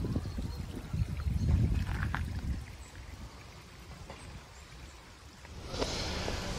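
Weak, iron-rich salt brine trickling out of a spring outlet and running along a shallow channel, with a low rumble over the first two or three seconds.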